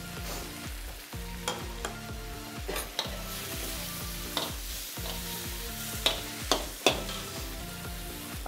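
Chicken pieces in sauce sizzling in a hot wok as they are stir-fried with spring onions, with a spatula knocking and scraping against the wok several times.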